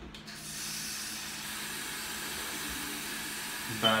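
Bathroom sink tap turned on with a low thump, then water running steadily into the basin.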